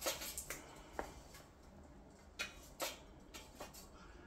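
Faint handling noise: a few light clicks and taps, spaced out, as the unplugged electric guitar is moved around in the hands.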